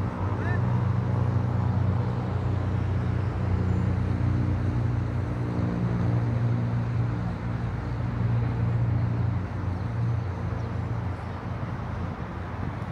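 Low, steady hum of a running motor-vehicle engine, easing off slightly near the end.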